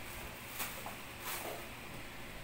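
Faint handling of packaging, a cardboard box and plastic-wrapped bottles, with a couple of brief light rustles about half a second and a second and a half in.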